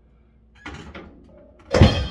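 Drum-kit strikes: a lighter hit about half a second in, then a loud drum hit near the end with a cymbal ringing on after it.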